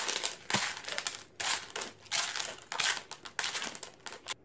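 Dry O-shaped cereal crunching and rattling on a plastic plate as a person pecks at it mouth-first, in short noisy bursts about twice a second.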